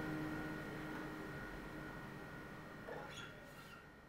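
Last chord of a fingerpicked acoustic guitar ringing and fading away, with a short squeak about three seconds in as the hand comes down on the strings.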